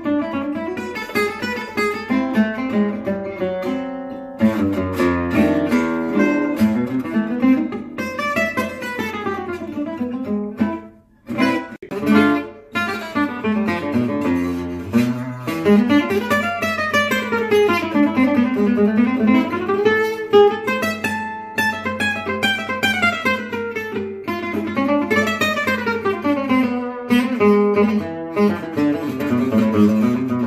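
Solo gypsy-jazz acoustic guitar playing, with quick runs of notes rising and falling and strummed chords. First a Bumgarner Selmer-style oval-hole guitar is heard, then, after a brief break about eleven seconds in, a Bumgarner DiMauro-style round-hole guitar.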